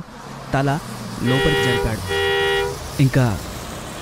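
A vehicle horn sounds two blasts of about half a second each, with a short gap between them, over a running engine.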